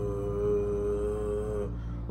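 A man's voice holding one steady hummed note, drawn out for about two seconds and stopping near the end.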